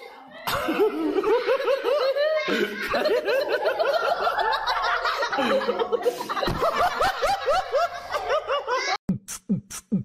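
Boys' stifled laughter: quick, repeated snickers and giggles forced through pursed lips. Near the end it gives way to a rhythmic beat of sharp hits about twice a second.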